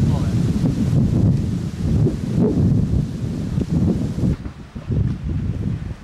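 Wind buffeting a camcorder microphone: an uneven low rumble that comes in gusts and cuts off sharply near the end.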